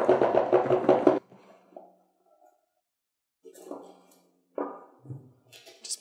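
Brown cardboard box being unpacked: a sustained rubbing sound for the first second as the lid slides off, then short cardboard scuffs and a soft knock as the packed mini PC is lifted out and set down on the wooden desk.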